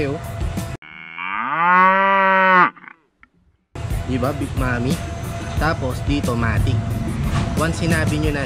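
A cow's moo dropped in as a sound effect over silence: one loud, long call of about two seconds that rises at the start, then holds and cuts off suddenly, followed by about a second of silence.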